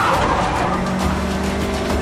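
Film chase soundtrack: a Mini Cooper's engine running hard, with a brief tyre squeal at the very start, mixed under a music score with steady low held notes.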